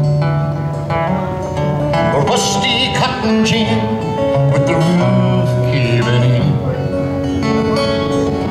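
Acoustic guitar playing a slow country song, with held low notes underneath and no clear singing.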